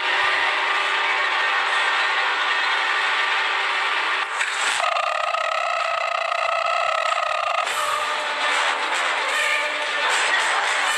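Harsh, steady noise from a horror clip's soundtrack, with a held shrill pitched sound from about five seconds in until nearly eight seconds.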